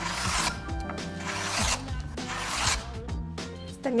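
A person imitating a hand plane with the mouth: three rasping, hissing strokes, each about half a second to a second long, like shavings being pushed off wood. Background music plays underneath.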